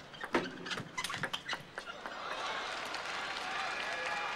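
A table tennis rally: the ball struck back and forth, sharp clicks of bats and table at an uneven rate over the first two seconds. Then an arena crowd cheers and applauds the won point, growing louder.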